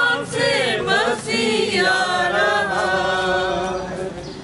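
A group of men and women singing a hymn together in Urdu.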